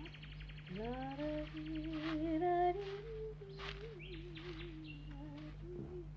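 A man's voice humming a wandering tune to himself. A brief rapid rattle comes at the start, and a few short sharp sounds are heard over the humming.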